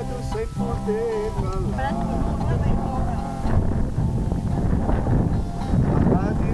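Acoustic guitar playing with voices over it. About two seconds in, a low wind rumble on the microphone takes over, with people talking over it.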